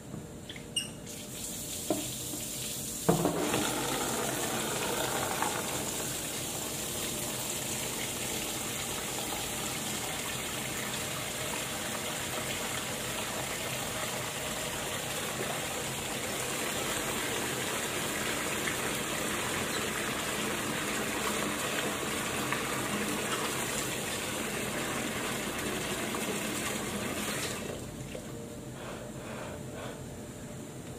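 Water running from a tap into a sink, turned on suddenly about three seconds in and running steadily until it is shut off near the end, after a couple of light knocks at the start.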